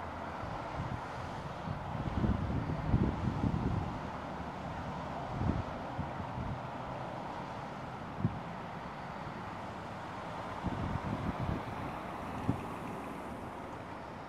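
Wind buffeting the microphone in irregular low gusts, over a steady outdoor background rumble.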